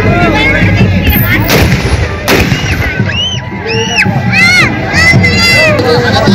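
Two celebratory gunshots about a second apart, sharp cracks over crowd din and music at a wedding party. High rising-and-falling calls follow.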